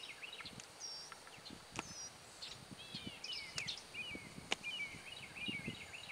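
Birds chirping and singing faintly, short repeated chirps, with a few sharp clicks scattered through.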